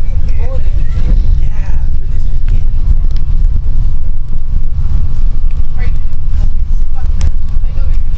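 Loud, steady low rumble of a school bus's engine and road noise heard from inside the cabin, with other riders' voices in the background and a few brief rattles.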